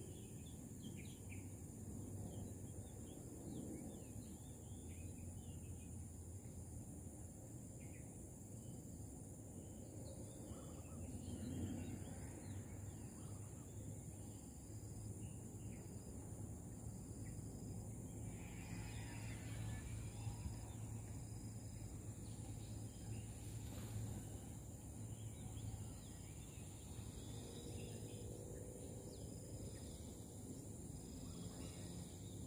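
Quiet outdoor ambience with scattered faint bird chirps and a steady high-pitched hum.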